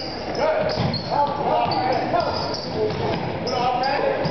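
A basketball bouncing on a hardwood gym floor during play, amid voices echoing in the gym.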